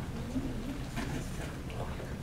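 A low, muffled voice murmuring briefly within the first second, over faint room noise and a few light clicks.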